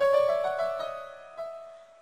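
Yamaha arranger keyboard in a piano-like voice: several notes struck in quick succession during the first second, then the chord held and fading away.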